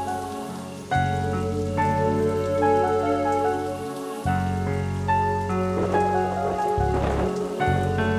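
Slow background music of held keyboard notes that shift every second or two over a low bass drone. A brief grainy rustle sits in it about six to seven and a half seconds in.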